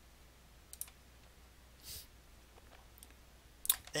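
A few sparse clicks of computer input as digits are keyed into a TI-84 calculator emulator, about a second apart, with the loudest near the end.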